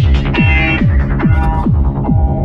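Progressive psytrance at about 140 bpm: a steady four-on-the-floor kick drum, a little more than two beats a second, each kick dropping quickly in pitch, under layered synths whose bright upper part thins out near the end.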